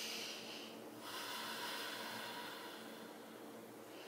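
A woman breathing audibly while holding a yoga stretch: a short breath at the start, then a longer, slower breath from about a second in.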